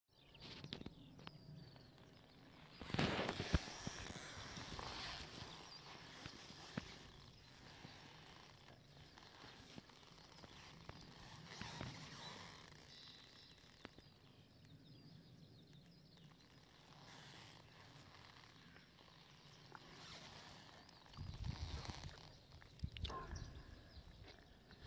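Faint outdoor ambience with gusts of wind buffeting the microphone, loudest about three seconds in and again near the end.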